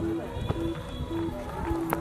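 Spectators' voices and calls around a football pitch, over a short low tone repeating about twice a second, with one sharp knock just before the end.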